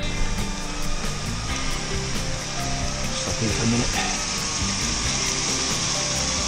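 Steady rushing noise of wind and a bicycle in motion, with faint background music underneath.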